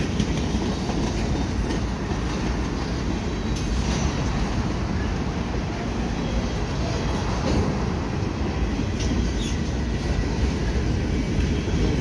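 Freight cars of a CN manifest train, centerbeam lumber cars and boxcars, rolling across a railway bridge: a steady rumble of steel wheels on rail.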